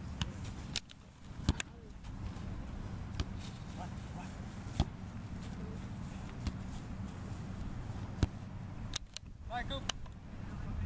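Soccer ball being passed back and forth on grass: sharp single thuds of foot striking ball, a few seconds apart, over a steady low background rumble.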